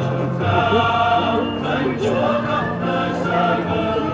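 Choir singing a processional hymn in sustained, held notes with several parts over a steady accompaniment.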